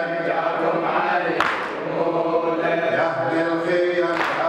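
Male radood chanting a Muharram latmiya lament into a microphone in long, drawn-out notes, with other voices seeming to join in chorus. One sharp percussive hit lands about a second and a half in, part of a slow beat repeating every few seconds.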